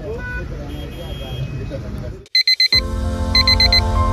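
Street noise with voices and traffic, cut off abruptly, then two runs of four quick electronic beeps like a digital alarm clock, over background music that starts with the first run.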